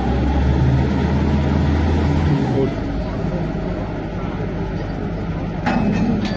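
Engine and machinery of a truck-mounted borehole drilling rig running steadily. A deep drone drops away a little over two seconds in. Voices shout briefly near the end.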